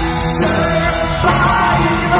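Progressive metal band playing loud and live in a large hall, with distorted guitars, drums and keyboards under a sung vocal line, heard from the crowd.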